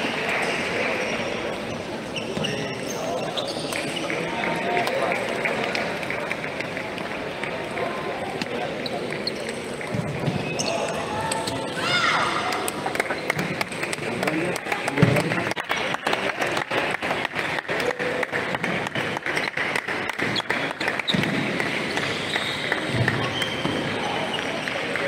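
Table tennis balls clicking off paddles and tables in a rally, a quick run of sharp ticks through the second half, over a steady background of voices chattering in the hall.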